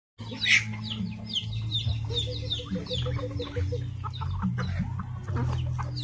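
A flock of chickens clucking with many short, quick calls as they crowd in to be fed, over a low steady hum.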